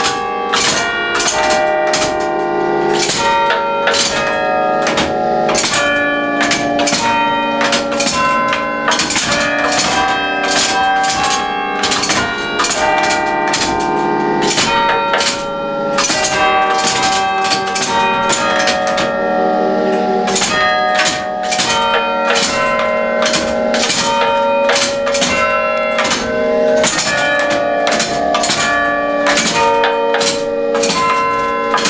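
Church bells played by a pinned-drum carillon machine: its hammers strike the tower's ring of eight bells (tenor 22 cwt) in a tune, a steady run of strokes several a second, each note ringing on under the next.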